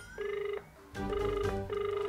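A smartphone on speakerphone sounding the ringing tone of an outgoing call: a repeated buzzy beep at one steady pitch, with a short break about half a second in.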